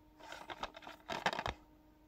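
Plastic DVD case being turned over in the hand, with small clicks and rustles of the case, densest about a second in.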